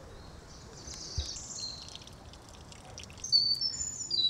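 Small birds singing outdoors: a few high, thin whistled notes early on, then a quick falling series of short notes near the end, over a faint steady outdoor background.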